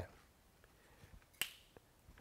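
A single short, sharp click about one and a half seconds in, in an otherwise quiet room.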